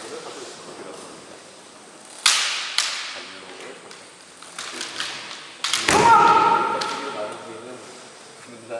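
Kendo bout: two sharp, echoing cracks of bamboo shinai or stamping feet on the wooden floor a couple of seconds in, a few lighter clacks, then a sharp crack followed by a long kiai shout that rises in pitch and holds for about a second, the loudest sound, as the fighters clash and close in.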